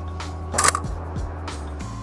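Background music with steady low notes, and about half a second in, one sharp shutter click from a Mamiya 645 Super medium-format camera. The shutter fires only after being switched to multiple-exposure mode, as the camera otherwise fails to fire.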